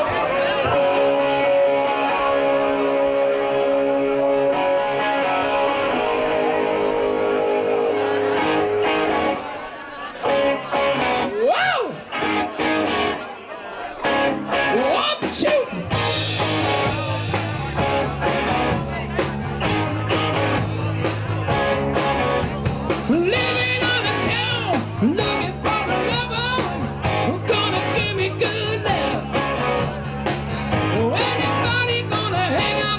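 Live rock band: steady held chords ring for the first third, then a quieter, broken-up stretch of scattered notes. About halfway through, drums and bass kick in and the full band plays a rock-and-roll song with a man singing.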